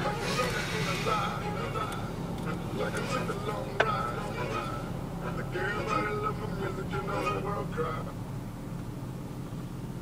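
Steady low drone of automatic car wash machinery heard from inside the car cabin, with indistinct voices underneath and one sharp click about four seconds in.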